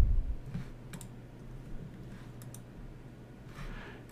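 A few faint, isolated computer mouse clicks over a steady low hum.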